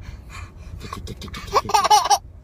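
A baby laughing: a few soft breaths and small sounds, then a burst of loud, high, wavering laughs near the end.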